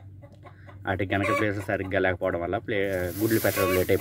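A hen sitting on her straw nest clucking in a quick run of short calls that begin about a second in. Near the end the straw rustles.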